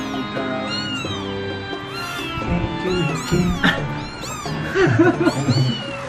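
Young kittens mewing over and over, a rapid string of short, high-pitched, arching mews, with background music underneath.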